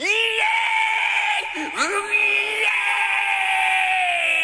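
A man's long, high-pitched excited shriek, 'hiiieee', rising at the start, dipping briefly about one and a half seconds in, then held again.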